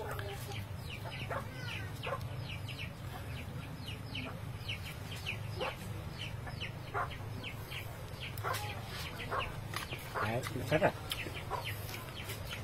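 Chickens calling: a steady run of short, high, falling peeps about twice a second, with a few lower clucks near the end, over a steady low hum.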